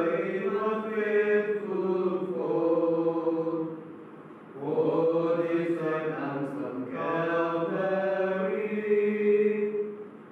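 Men's voices singing a slow, chant-like hymn in unison in long held notes, with a short breath pause about four seconds in before the next phrase.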